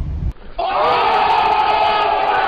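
A man's long, drawn-out shout of "Oh!", held on one pitch, with a crowd around him. It starts about half a second in, right after a brief low car-cabin rumble.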